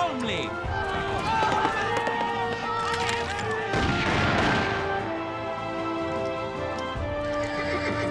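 Background music with long held notes, and a horse whinnying loudly about four seconds in.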